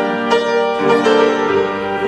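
Grand piano accompaniment for a Spanish copla song, with a new chord struck about every half second between sung phrases.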